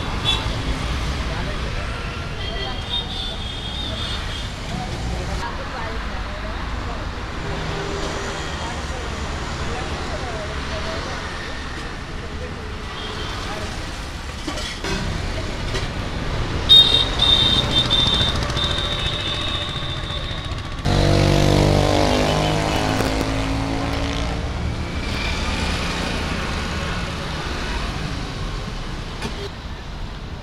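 Steady road traffic with a continuous low rumble, mixed with indistinct voices. A few short, high, steady tones come about three seconds in and again a little past halfway. From about two-thirds of the way in, a louder passage with rising pitch sets in.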